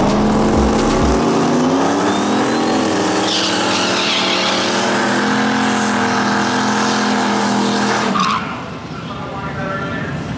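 Nissan 240SX drag car doing a burnout: the engine revs up and is held at high, steady revs while the rear tyres spin on the pavement, then cuts off suddenly about eight seconds in.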